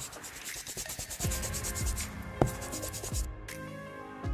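Scratchy brush-stroke sound effect, a fast run of rough strokes that cuts off about three seconds in, over electronic background music with a steady low beat.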